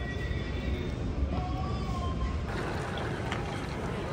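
Indoor station ambience: a steady low rumble with faint distant voices. About halfway through it changes to busier outdoor street noise with crowd chatter.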